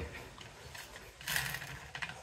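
Plastic board-game spinner wheel being spun by hand, clicking as it turns, louder from a little past halfway.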